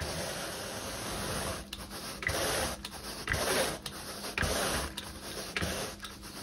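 Carpet grooming rake dragged back and forth through carpet pile, a rough rubbing rasp in repeated strokes with short breaks between them.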